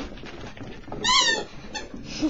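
Chihuahua puppy giving a short, high-pitched yelp that rises and falls in pitch about halfway through, followed by a much briefer second yelp.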